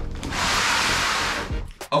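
A rush of scraping, rustling noise lasting about a second as a cardboard box of wood offcuts is hauled up onto a wooden workbench. A short knock follows near the end as it is set down.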